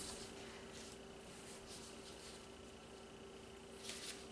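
Very quiet room tone: a faint steady hum under a soft hiss, with nothing loud happening.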